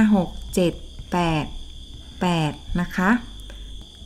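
A woman counting aloud in Thai, 'six, seven, eight', over a steady high-pitched whine that never stops.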